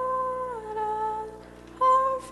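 A soloist's voice through a microphone, humming or singing a sustained melody line. A long held note slides down to a lower note about half a second in, there is a short break, and a new note begins near the end.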